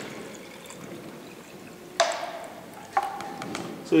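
Liquid plant extract trickling from a plastic bowl into a plastic jar, then two sharp knocks with a short ring, about a second apart, in the second half.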